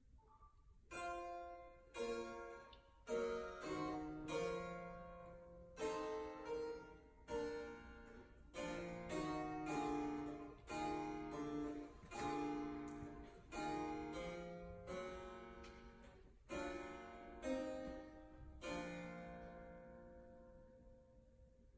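Harpsichord played solo: a slow run of plucked chords and notes, each struck sharply and dying away, with short breaks between phrases.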